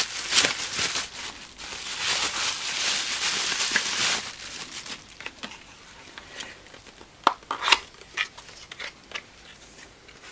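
Bubble wrap crinkling and rustling as it is pulled open from around a small cardboard box, loudest for the first four seconds. Then quieter handling, with two sharp clicks a little under half a second apart.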